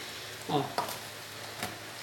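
A wooden spoon stirring a moist shredded-vegetable mixture in a stainless steel bowl: quiet, wet scraping with a few light clicks of the spoon.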